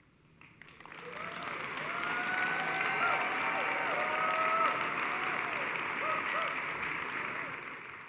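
Audience applause after a speech ends, swelling about a second in and fading away near the end.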